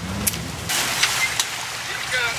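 Lifted Dodge Ram pickup's engine running at low revs in the first moment, then giving way to a rushing hiss of creek water with a few sharp knocks, about a second apart.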